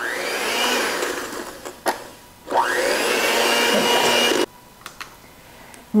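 Handheld electric mixer whipping egg whites in a stainless steel bowl, re-beating a meringue that has turned a little watery. It runs in two bursts of about two seconds each, the whine rising as the motor spins up each time. The first burst fades off, and the second cuts off suddenly.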